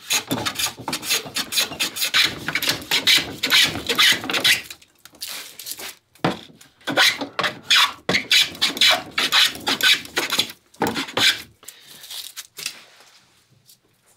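Hand smoothing plane shaving dense yellow cedar while cutting a scarf joint, in repeated short noisy strokes. The strokes come quickly for the first five seconds or so, then at wider spacing, and die away near the end.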